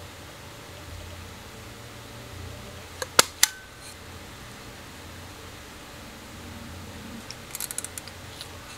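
Sharp metallic clicks from the mechanism of a 1961 Konica L 35mm film camera being handled: three clicks close together about three seconds in, the last with a brief ring, then a quick run of small ticks near the end. A low steady hum runs underneath.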